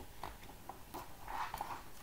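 Faint rustle and light clicks of a picture book's paper page being handled and turned in a small room.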